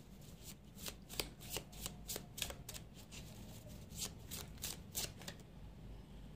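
A deck of tarot cards being shuffled by hand: a run of quick, soft card flicks and snaps, a few a second, stopping about five and a half seconds in.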